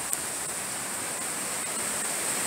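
Steady rushing hiss of storm water running through a flooded backyard, with a thin steady high hiss on top.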